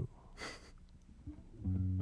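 A brief laugh, then about a second and a half in, an amplified instrument starts a low, sustained note as the live band opens the song.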